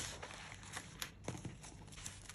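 Paper cutouts and spiral-notebook pages being handled: a run of light, irregular taps and clicks with soft paper rustling between them.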